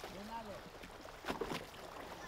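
Faint sounds of a small river boat on the water, with one short sharp sound about a second and a half in. A brief faint voice is heard near the start.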